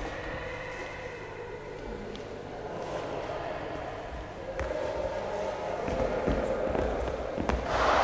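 Dance footwork thudding on a sports hall floor: stamps and landing steps from kicks, getting louder and more frequent in the second half, with a hall echo.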